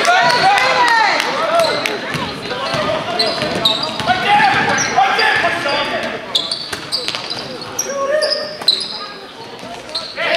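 A basketball dribbled on a hardwood gym floor, with sneakers squeaking in short high chirps as players cut and stop. Indistinct shouts from players and the crowd run through it, and it all goes somewhat quieter near the end.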